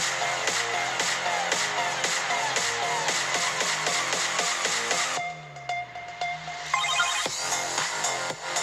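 Electronic dance music with a fast, steady beat playing from a 10.1-inch netbook's built-in Harman speakers at 80% volume, thin with little bass. About five seconds in the beat drops out into a quieter break with a held tone and a falling low sweep, and the music builds back up near the end.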